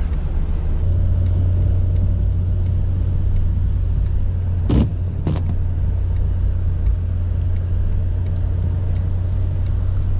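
Honda Fit driving on the road: a steady low drone of engine and road noise, with two brief knocks about half a second apart near the middle.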